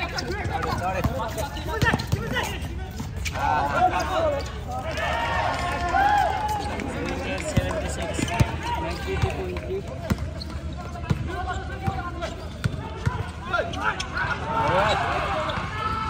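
A basketball being dribbled and bounced on an outdoor concrete court, short repeated thuds, with sneakers moving and voices of players and spectators calling out over it, loudest a few seconds in and again near the end.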